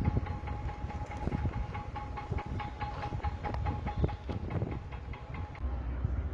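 Outdoor field recording with a steady low rumble, a steady high-pitched whine that stops near the end, and a run of quick clicks and rattles over it.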